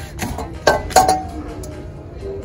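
Metal woks and pans knocking and clinking against each other as one is pulled from a store shelf: a few sharp knocks, the one about a second in ringing briefly.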